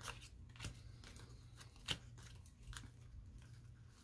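Faint soft clicks and rustles of a tarot deck being handled as reversed cards are turned the right way up, with one sharper card click just under two seconds in.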